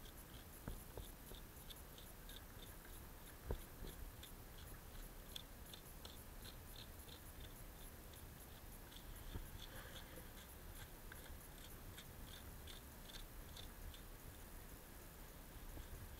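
Faint, repeated light scratching strokes of a hoof pick working at the sole of a hoof, about two to three a second, with one sharp click about three and a half seconds in.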